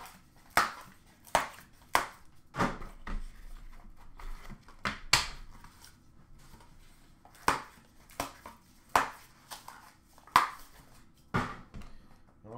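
Hands opening a hockey card box: a dozen or so irregular sharp taps and knocks of cardboard and card packaging being handled and set down on a glass counter, with light rustling between them.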